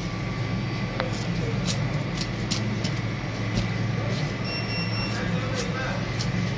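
A knife scraping the scales off a large whole fish in quick, regular strokes, roughly two a second, each a short sharp scrape. A steady low hum runs underneath.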